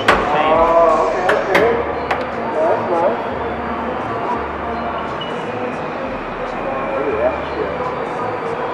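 Several people talking and exclaiming in the background, with a few sharp clicks in the first two seconds.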